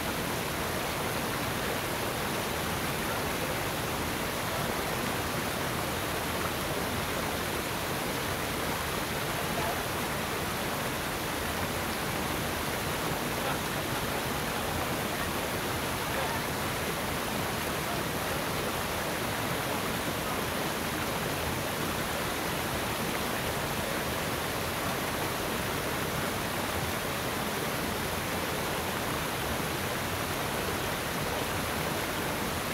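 Water splashing steadily as many thin trickles and drips fall from a mossy rock overhang onto stones, an even hiss with no breaks.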